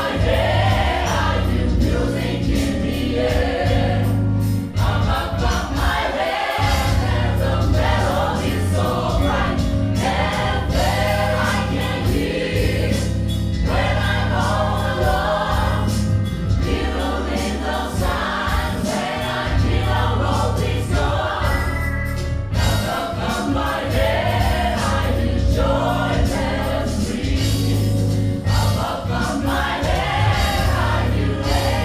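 A mixed gospel choir of men and women singing live, over a steady beat and a strong bass line.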